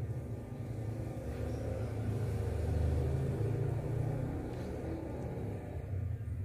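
Low vehicle rumble that swells to a peak about three seconds in and then fades, as a vehicle passes.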